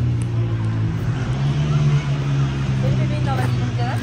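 A steady, low engine hum from a motor vehicle running nearby, holding one pitch throughout.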